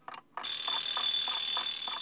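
Twin-bell alarm clock ringing with a rapid, even rattle, starting about half a second in.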